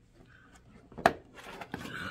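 Cereal being eaten from a bowl with milk: a single sharp clink of the spoon against the bowl about a second in, followed by softer crunching of the flakes.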